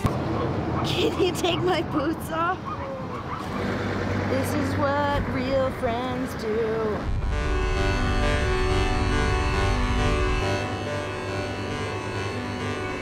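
Voices with playful, sliding pitch and no clear words over background music, then background music with sustained chords alone from about seven seconds in.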